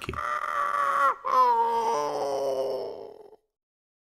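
A person's drawn-out wailing scream in two long cries, each sliding slowly down in pitch. The second cry fades out a little over three seconds in.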